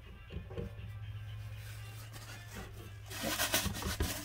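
A steady low hum at first, then about three seconds in a paper towel rubbing and blotting against the wet, paint-spritzed wooden coffee-stirrer planks of a miniature wall, soaking up the excess paint to age the wood.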